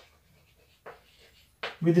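Chalk writing on a blackboard, faint scratching with one sharper tap about a second in; a man's voice starts speaking near the end.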